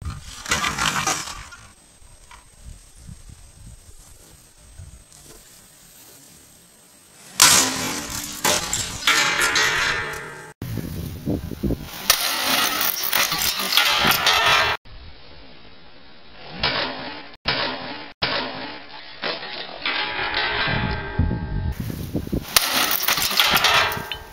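Sledgehammer blows smashing a plastic VCR: several loud crashes of cracking, breaking plastic, separated by quieter stretches and abrupt cuts.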